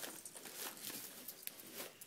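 Faint rustling of Christmas gift-wrap paper, with a few soft clicks.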